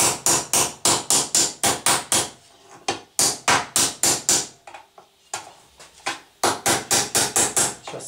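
Quick hammer taps at about four blows a second, in three runs with two short pauses. They are seating a Celeron (phenolic laminate) handle onto a knife's tang.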